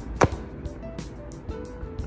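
A plastic extraction tube is punched into the perforated cardboard tube holder of a test-kit box: one sharp snap a fraction of a second in, over background music.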